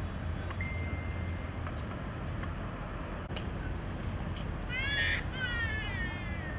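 A large bird calling twice near the end, each call a harsh pitched cry that falls away, over a steady low outdoor rumble. A brief thin high tone sounds for about a second near the start.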